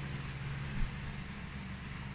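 Room tone: a steady low hum with a faint even hiss, no music coming through.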